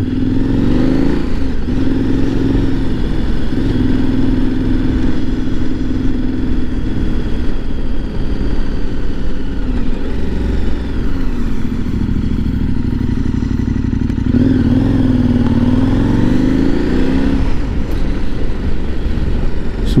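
KTM 1090 R motorcycle's V-twin engine running at low street speed. Its note rises about a second in, falls away near the middle and climbs and drops again later as the throttle is opened and closed.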